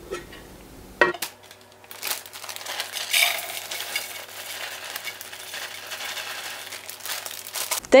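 Soy wax flakes poured from a plastic bag into a metal pour pitcher on a kitchen scale: the bag rustles and the flakes hiss and tick into the pitcher for about six seconds. A short knock comes about a second in.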